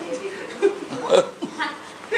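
A person's voice in short, broken-off snatches, with one sharp vocal burst a little past the middle.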